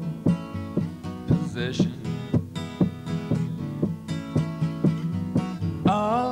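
Solo acoustic guitar strummed in a steady rhythm, about two strokes a second, playing an instrumental break between sung lines; the singer's voice comes back in at the very end.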